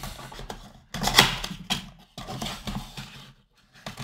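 Cardboard blaster box being torn open by hand: a run of short rips and scrapes of paperboard, the loudest a little after a second in.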